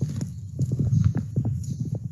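Footsteps on a gravel trail: a quick run of short, irregular steps.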